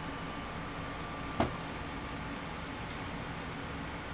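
Steady room air-conditioner noise, with a single sharp knock about a second and a half in as the photobook is handled against the table.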